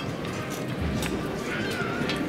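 Procession of robed penitents walking over stone paving, with the murmur of spectators, taps about every half second, and a short wavering high-pitched call near the end.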